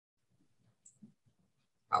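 Near silence over the call audio, with a few faint clicks and low murmurs; a voice starts speaking near the end.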